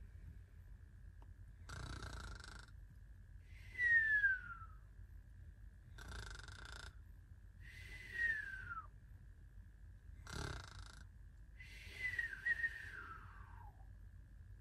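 Cartoon-style snoring sound effect, three times: a rasping snore on the in-breath, then a whistle falling in pitch on the out-breath, about every four seconds. A faint steady high tone runs underneath.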